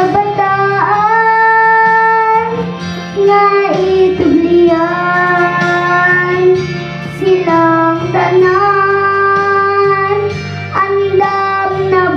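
A young girl singing a song into a microphone, holding long steady notes with short slides between phrases, over a musical accompaniment.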